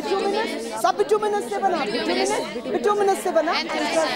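Several voices talking at once in a room: overlapping chatter with no single clear speaker.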